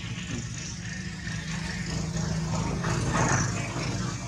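Steady low hum of a motor running in the background, growing a little louder about two seconds in.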